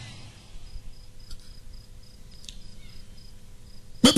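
A cricket chirping: a thin, high pulsed note repeating evenly about three times a second, heard faintly over a low steady hum, with two faint clicks.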